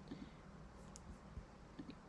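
A few faint computer mouse clicks over near-silent room tone.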